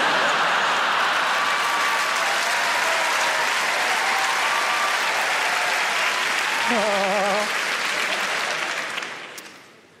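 Large theatre audience laughing and applauding loudly in a long burst that fades away over the last second or two. About seven seconds in, a single voice rises above the crowd.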